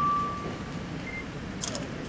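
A single steady high tone that swells and dies away within the first second, over the low murmur of a large hall. A brief, higher beep follows about a second in, then a few faint clicks near the end.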